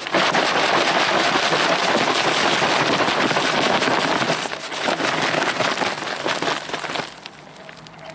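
Plastic bottle of Bordeaux mixture (copper sulphate and lime in water) being shaken hard, the liquid sloshing against the plastic walls, to stir up the settled sediment before use. It is loudest for the first four seconds or so, goes on more unevenly, and stops about seven seconds in.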